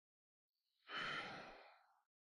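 A person's breathy sigh, about a second long, starting nearly a second in and trailing off.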